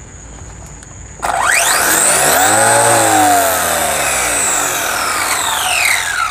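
Electric motor and drivetrain of an LC Racing 1/14 truggy, held off the ground, throttled up about a second in: a whine that rises sharply as the free wheels spin up and their tires balloon, holds, then falls away as they spin down.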